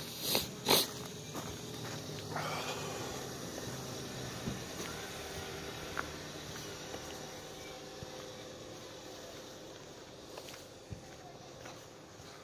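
Handling and walking noise from a phone carried outdoors: two sharp knocks near the start, then a steady low rustle with a few faint clicks, and close breathing.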